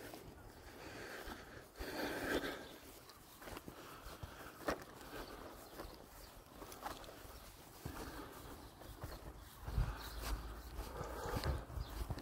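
Faint footsteps and rustling of a person and a dog walking on grass, with scattered small clicks and a low rumble near the end.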